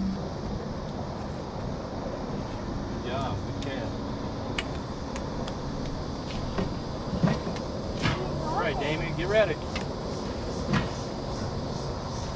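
A steady outdoor hiss, with faint voices twice and a scattering of light clicks and taps in between.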